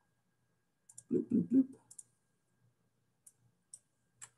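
Computer mouse clicking a handful of times, faint, short and sharp, while software menus are opened and a dialog box is brought up.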